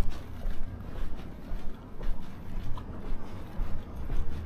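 Footsteps on a pavement at a walking pace, about two steps a second, over a low wind rumble on the microphone.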